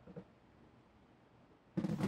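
Near silence: room tone, with one faint short sound just after the start. Music comes in near the end.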